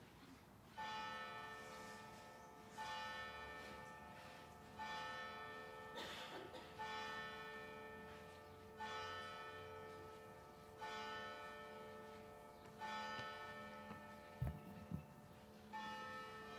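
A single church bell tolling slowly and faintly, one strike about every two seconds, each stroke ringing on and fading before the next. A soft knock is heard about six seconds in, and a low thud near the end.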